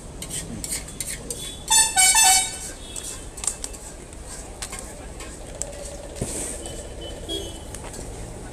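A vehicle horn honks twice in quick succession about two seconds in, a short toot then a longer one, over a steady low street hum with scattered clicks and clatter.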